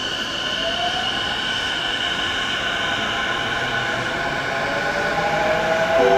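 JR East E233 series motor car's VVVF inverter and traction motors pulling away from a station stop: a whine rising in pitch from about half a second in over steady high tones, slowly getting louder as the train gains speed.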